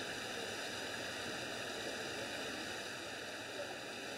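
Steady outdoor crowd ambience: an even wash of noise with faint distant voices.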